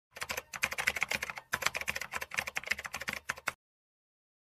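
Computer-keyboard typing sound effect: a fast, continuous run of key clicks, with a brief break about a second and a half in, stopping suddenly half a second before the end.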